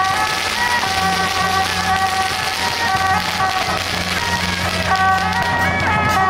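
Traditional temple-procession music: a shrill reed-horn melody moving in held, stepping notes, over a steady hiss and a low steady hum.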